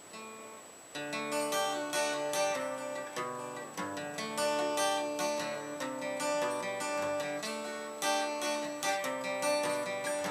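Acoustic guitar being played by hand. After a quiet first second, it resumes with a steady run of plucked and strummed notes and chords.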